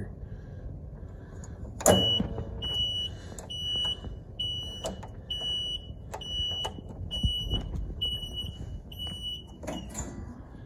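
Electronic warning beeper on a John Deere Gator, most likely its reverse alarm going off because the shifter has slipped into reverse, sounding a high single-tone beep a little more than once a second from about two seconds in. A loud metal click comes just before the beeping starts, with lighter clicks from the shift linkage between the beeps.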